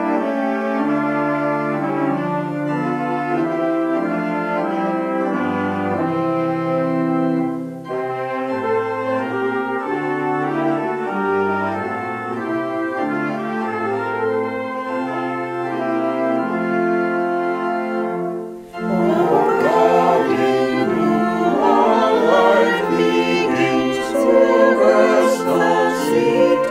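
Organ, alto saxophone and two trumpets playing a hymn introduction in sustained chords over a moving bass line. About 19 seconds in, after a brief break, singing voices join the instruments as the hymn itself begins.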